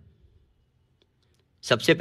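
Spoken Hindi trailing off, then about a second of near silence with one faint click, then a voice starting the next line near the end.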